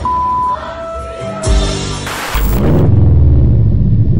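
A steady beep lasting about half a second at the start. Then music, with a whoosh about two seconds in leading into a loud, bass-heavy intro theme.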